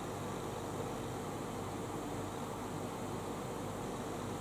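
Steady background hiss with a faint low hum and a faint steady tone, with no distinct sounds: room tone.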